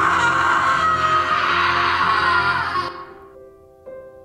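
A woman's loud, anguished scream: one long, raw scream that sinks slightly in pitch and trails off about three seconds in. Background music plays underneath.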